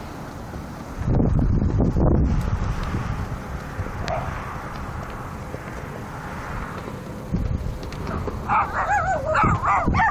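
Wind buffeting the microphone as a low rumble. Near the end, a dog whines with a wavering pitch that rises and falls.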